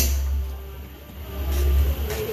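Live band music dominated by a deep low bass rumble that dips about a second in and swells back up, with little else above it.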